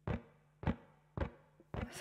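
Four evenly spaced percussive knocks, a little over half a second apart, each with a short ring, opening a background music track.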